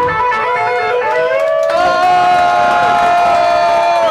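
Electric guitar ringing out at the end of a live punk rock'n'roll song: long held notes that slide and bend in pitch, swelling louder about halfway through, with some crowd noise underneath.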